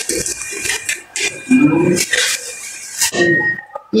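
Hands cleaning raw sardines at a stainless-steel sink: several short wet clicks and squishes, with a brief voice about halfway through.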